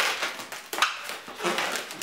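Inflated 260 latex modelling balloons rubbing and squeaking against each other and the hands as a twisted section is pushed through a loop, in a few short rasps.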